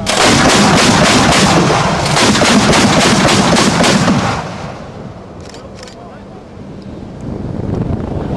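Twin-barrelled towed anti-aircraft guns firing rapid automatic fire for about four seconds, then stopping.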